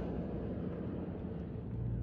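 A vehicle engine idling: a low, steady hum.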